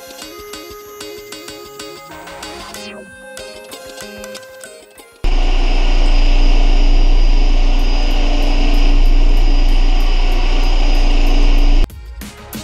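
Background music for about five seconds, then a sudden switch to a random orbital floor sander running loudly and steadily with a deep hum, working a pine floor with coarse 20-grit paper; it cuts off abruptly near the end.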